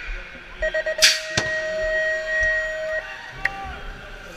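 BMX start-gate cadence: a quick run of short electronic beeps, then one long steady tone of about two seconds. A loud metal crash lands as the long tone begins, with a second bang just after: the gate dropping onto the ramp.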